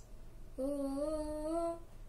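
A boy singing unaccompanied, holding one note for about a second that rises slightly in pitch, after a short pause.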